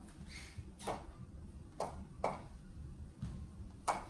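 About five short, faint knocks and clicks at irregular intervals over a low steady room hum.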